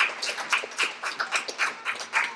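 A small audience applauding, the claps thinning out and fading toward the end.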